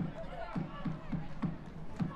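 A steady low drumbeat, about three beats a second, with faint voices and shouts from the ground underneath.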